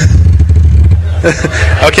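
A steady low hum runs throughout, with off-microphone speech from a second person coming in during the second half.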